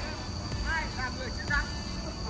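A faint human voice in a few short pitched phrases, over a steady high whine and a low background rumble.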